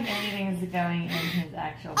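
A baby babbling and fussing in a string of drawn-out voice sounds, with a held lower note in the middle.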